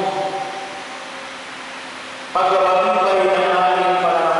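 A priest chanting a liturgical prayer into a handheld microphone in long, steady held notes: one note dies away over the first second, and a new, louder note starts about two and a half seconds in and holds.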